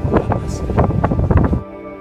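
A man talking over wind noise on the microphone aboard a small motorboat, cut off suddenly about a second and a half in by soft ambient music of steady sustained tones.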